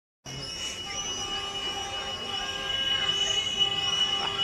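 Heavy vehicles on the move, a mechanical rumble that grows slowly louder, with a steady high-pitched whine running through it.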